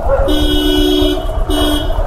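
A vehicle horn honking with two pitches sounding together: one long blast of about a second, then a short one near the end, over a steady low rumble.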